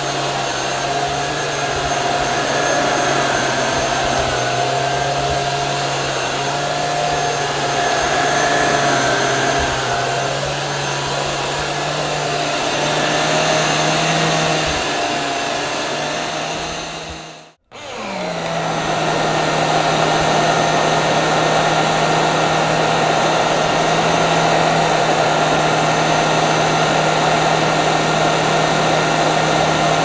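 Handheld mattress vacuum cleaner running steadily on a mattress, a continuous motor hum and whine with suction hiss. About 17 seconds in it cuts out for a moment, then comes back up to speed and runs on steadily.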